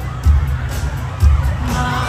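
Stadium concert crowd cheering and shouting over loud live music through the PA, with a heavy bass beat about twice a second.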